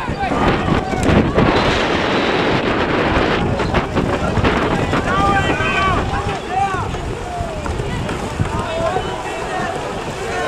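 Wind buffeting the microphone for the first few seconds, then several voices shouting and calling out from across the water among kayak polo players.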